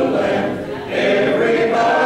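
A church congregation singing together, with a short break between lines just before a second in.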